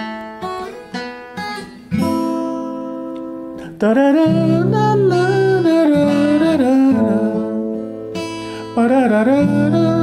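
Acoustic guitar fingerpicked slowly, plucking the third and first strings together as a two-note phrase moving up the neck. From about four seconds in, a voice carries the melody over the guitar.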